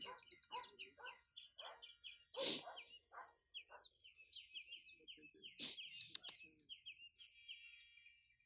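A small songbird singing a long run of short chirps, a few notes a second, ending in a held note near the end. Two sharp clicks cut in, about two and a half and five and a half seconds in.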